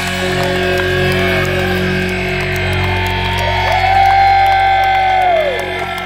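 Live rock band playing: electric guitars sustain a chord under a lead line of long held notes that bend down in pitch as they end.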